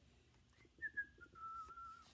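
A woman whistling softly with her lips, a short tune of three notes that step downward, the last note held longest.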